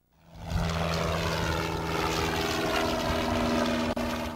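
Propeller airplane engine running at a steady speed, fading in over the first half-second.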